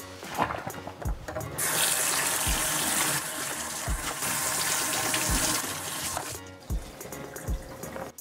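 Kitchen faucet running water over a plastic food container in a stainless steel sink to rinse out the soap. The stream starts about a second and a half in and stops about six and a half seconds in.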